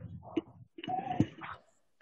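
Mixed background noise from the children's open microphones on a video call: a low hum with scattered short knocks and rustles, and a brief call-like tone about a second in.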